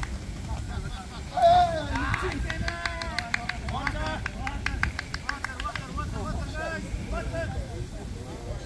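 Men's voices calling out and chatting across an open training pitch, with one loud call about a second and a half in. A quick run of sharp clicks comes midway, over a steady low rumble.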